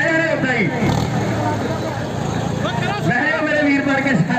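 Loud men's voices calling out over the steady running of two tractor engines, a Sonalika DI 745 and a New Holland 5620, hitched together for a tug-of-war pull.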